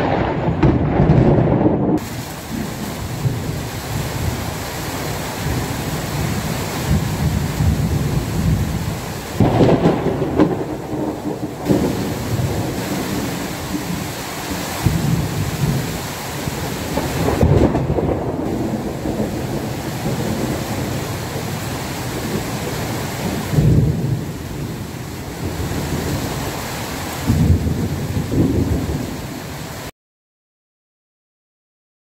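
Thunderstorm: steady rain with thunder rumbling again and again, about five rolls, the loudest near the start, about ten seconds in, and near the end.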